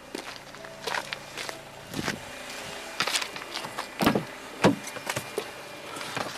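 Sharp knocks and clicks, about one a second, from someone moving about and handling the car. In the first couple of seconds another car's engine is faintly heard passing by.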